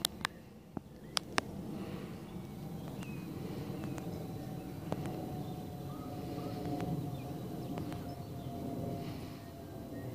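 Outdoor field ambience: a steady low rumble with a few scattered sharp clicks, and a faint steady hum in the second half.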